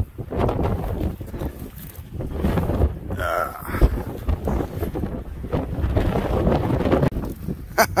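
Strong wind gusting and buffeting the microphone in a dust storm, a rough, uneven rumble that swells and drops.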